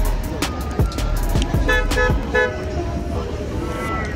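A car horn tooting three short times in quick succession about two seconds in, over background music with a heavy beat.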